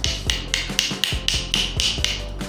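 A metal tool scraping and knocking at the opened insides of an Eveready battery cell. It makes short, sharp strokes at a steady pace of about four a second.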